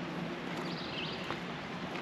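Outdoor ambience: small birds chirping briefly a few times, high-pitched, over a steady low background hum.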